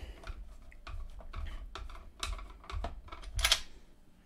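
Irregular small clicks and scrapes of a screwdriver turning out the screws that hold a small portable radio's case together, with a louder click about three and a half seconds in.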